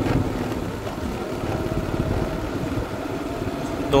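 Motorbike engine running steadily while riding along the road.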